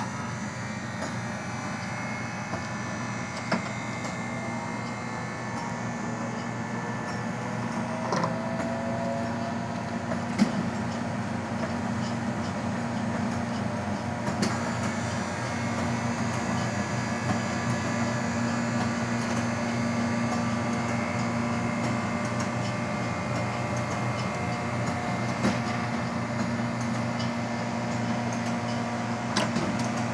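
Taylor C712 air-cooled soft serve machine running with a steady hum that grows slightly louder after the first several seconds, as soft serve is drawn from it; a few sharp clicks come as the draw handles are pulled and released.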